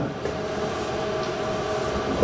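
Steady background noise with a faint, steady tone running through it.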